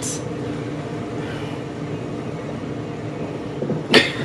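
A steady low drone from the TV episode's soundtrack playing in the room, with a short sharp sound at the very end.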